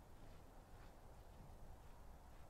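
Near silence: faint open-air background with a low rumble.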